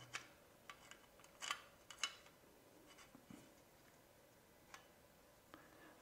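Faint clicks and light scraping as a Raspberry Pi 5 board with an NVMe hat is slid into its case, the two clearest clicks about one and a half and two seconds in.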